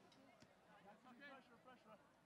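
Near silence, with faint distant voices calling out on and around the field.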